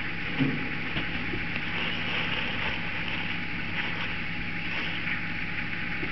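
A steady, even hiss of background noise with no distinct calls or knocks.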